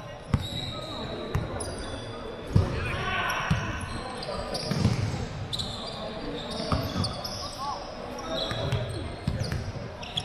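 A basketball bouncing on a hardwood court in scattered thuds, with short sneaker squeaks and players' voices in the background.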